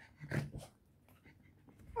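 Cavalier King Charles spaniel panting: a couple of quick, short breaths about half a second in.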